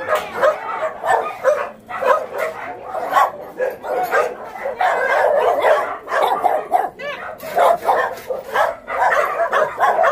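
A chorus of many dogs barking and yipping at once in shelter kennels. The calls overlap without a break.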